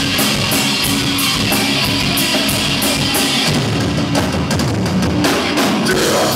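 Live heavy metal band playing loud: distorted guitar, bass and drum kit, with cymbals struck steadily about three times a second. About three and a half seconds in, the low end thins out and the playing turns choppier.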